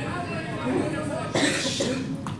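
A person coughs into a microphone about one and a half seconds in, a short harsh burst, amid voices in the room.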